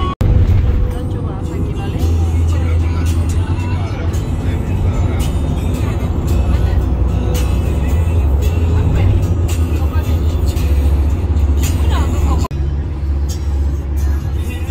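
Steady low road and engine rumble inside a moving passenger van on a highway, with voices and music faintly over it. The sound breaks off briefly just after the start and again near the end.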